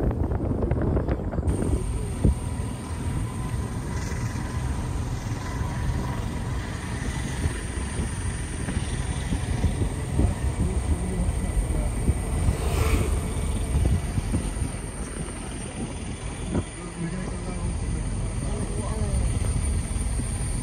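Steady road and engine rumble of a moving car, heard from inside.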